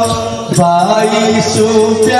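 A man singing a slow, chant-like folk melody into a microphone through a PA, holding long notes over a steady drone accompaniment.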